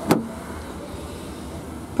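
Car door latch clicking as the front door handle is pulled and the door opens, a single sharp click right at the start. A steady low hum carries on under it.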